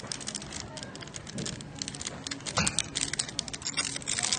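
Aluminium foil crinkling as hands handle a fish on it: a quick, irregular run of crackles.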